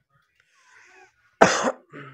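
A man coughs once about one and a half seconds in, followed by a short low vocal sound.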